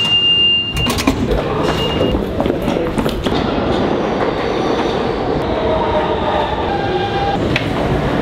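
New York City subway train running, heard from on board: a loud, steady rumble and rattle, with held whining tones in the second half. A high steady beep sounds at the start and again, shorter, about two seconds in.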